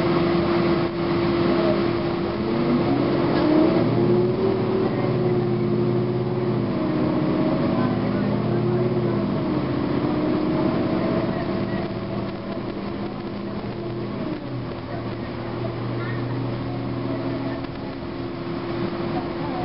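Interior sound of a 2009 Gillig Advantage transit bus underway, its Cummins ISM diesel and Voith automatic transmission running with a steady whine whose pitch rises and falls several times as the bus changes speed.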